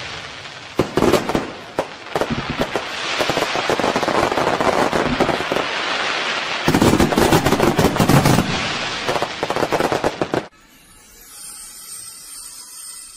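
Fireworks going off: a dense run of crackling and sharp pops with heavier bangs about seven to eight seconds in, cutting off suddenly near the end, after which faint music begins.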